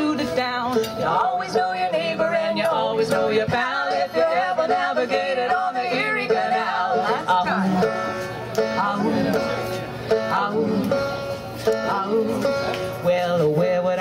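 Old-time folk band playing live, with banjo to the fore among other acoustic strings and voices singing the melody throughout.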